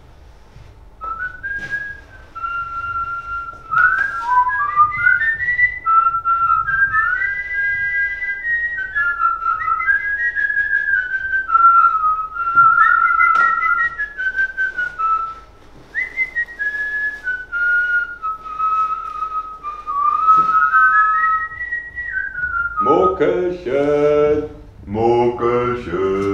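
A person whistling a slow, wandering tune for most of the stretch, with a few light clicks and rustles of handling. Near the end a man's voice starts singing or chanting.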